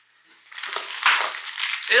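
Packaging crinkling and crackling as a nail-file pack is pulled open by hand, starting about half a second in.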